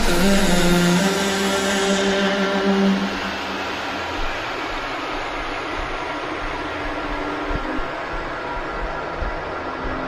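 Dubstep track in a breakdown: held synth notes for the first few seconds, then the sound drops to a quieter, beatless wash of noise whose highs slowly fade away.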